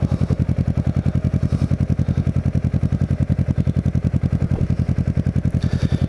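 Kawasaki Ninja 650R parallel-twin engine running steadily at low revs, an even pulse of about ten beats a second, heard from the bike.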